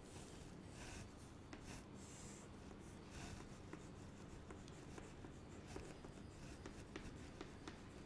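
Chalk scraping and tapping faintly on a chalkboard as lines and small triangles are drawn, in short strokes with scattered light ticks.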